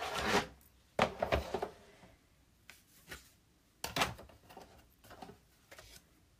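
Plastic cutting plates and a magnetic platform being handled and slid into a Big Shot die-cutting machine: a few short knocks and scrapes, the loudest at the start, about a second in and about four seconds in.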